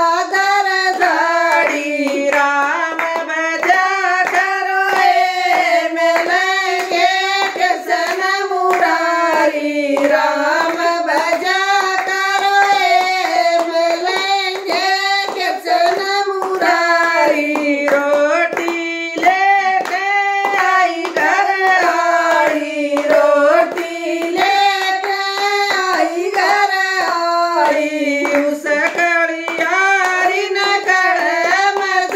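Women singing a Hindu devotional bhajan together in one melody line, keeping time with steady rhythmic hand claps.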